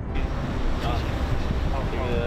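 Steady outdoor background noise with a strong low rumble, typical of road traffic. A voice begins near the end.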